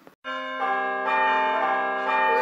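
A bell-like chime sound effect: several steady tones come in one after another about a quarter second in and ring on together as a held chord.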